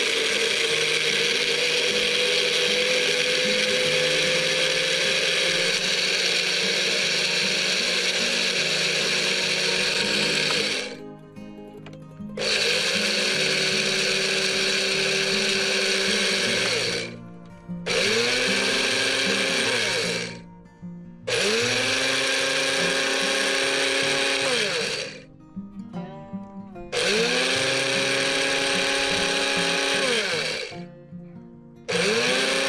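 Small electric grinder with a glass jar, its blades grinding dried hot chili peppers into powder, run in pulses. A long first run of about eleven seconds is followed by four shorter runs of two to four seconds. The motor whine rises in pitch as it spins up and drops away each time it is switched off.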